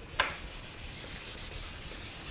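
A marker tapping once against a whiteboard just after the start, followed by faint, steady rubbing.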